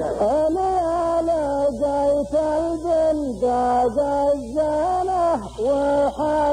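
Men's voices chanting a verse of Nabati poetry in unison, unaccompanied, in the drawn-out style of a muhawara poetry duel. The notes are held and slide up and down between them, with short breaks every half second or so.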